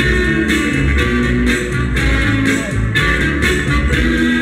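A Northern Soul record playing loud over a dance hall's sound system: guitar and bass over a steady beat.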